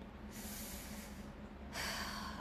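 A woman's breathing in a pause: a soft breath lasting over a second, then a louder, shorter intake of breath near the end.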